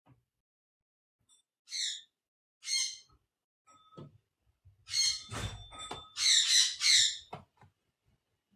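A series of harsh, high-pitched animal squawks: single calls about two and three seconds in, then a louder run of several calls near the end. A low rumble or thumping sits under the calls around five to six seconds in.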